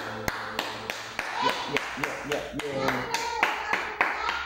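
Hand clapping, about three even claps a second, with people's voices over it as a karaoke song ends.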